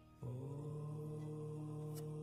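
Background music: a steady, drone-like held chord that comes in about a quarter of a second in and stays level.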